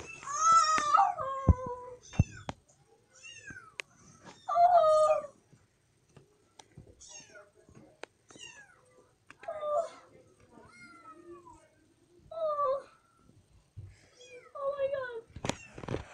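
A cat meowing repeatedly: a string of separate meows a few seconds apart, some faint, the loudest near the start and about five seconds in.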